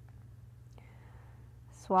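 Quiet room tone with a low, steady hum and one faint tick. A woman's voice starts speaking near the end.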